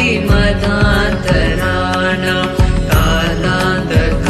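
Indian devotional song for Shiva: a voice singing over instrumental backing with a regular beat.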